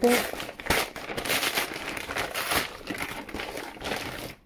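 Brown paper mailer envelope being torn open and crumpled by hand: a dense, irregular crackling rustle with many small sharp crinkles.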